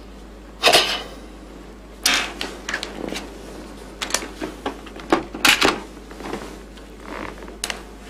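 Irregular clicks and knocks of objects handled on an office desk, about a dozen in all, the loudest about half a second in and again about five and a half seconds in.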